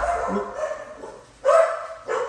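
A dog barking, with a short sharp bark about one and a half seconds in.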